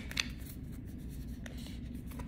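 Heart-shaped oracle cards being shuffled by hand: faint rubbing and slipping of card stock, with a soft tap just after the start and a fainter one about a second and a half in, over a low steady hum.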